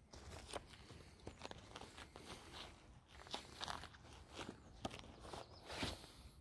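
Faint footsteps crunching irregularly over dry leaf litter and dead bracken, walking away.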